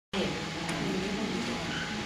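A person's voice, low and drawn out, over steady background hiss.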